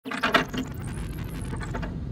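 Steady low drone of an airliner cabin in flight, with a short run of mechanical clicks about a quarter of a second in.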